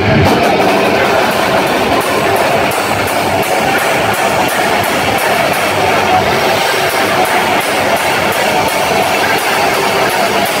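Live heavy metal band playing loud: distorted electric guitar and drums in a dense, steady wash, with a regular cymbal beat on top.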